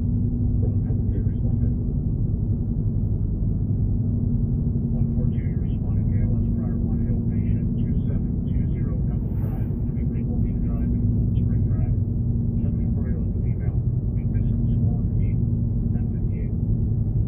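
Car cabin noise while driving at a steady speed: a steady low rumble of engine and tyres on the road. From about five seconds in, faint muffled voices come and go over it.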